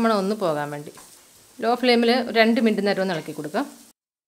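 Onions and spice powders sizzling in oil as they are stirred in a nonstick frying pan with a wooden spatula, under a woman's voice. The sound cuts off abruptly just before the end.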